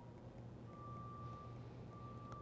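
Quiet room tone with a steady low hum. A faint, steady high-pitched tone comes in about two-thirds of a second in and holds.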